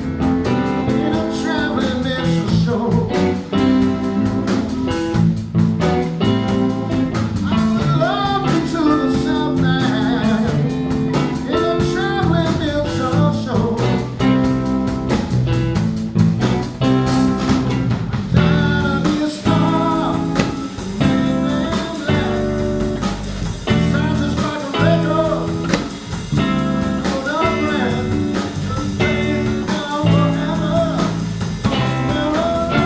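Live blues band playing: two electric guitars, electric bass and a drum kit, with a sung lead vocal over the band.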